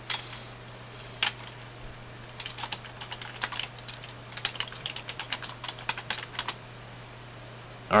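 Typing on a computer keyboard: two single key presses, then a quick run of keystrokes lasting about four seconds.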